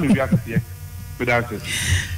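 Short snatches of speech over a steady low electrical mains hum.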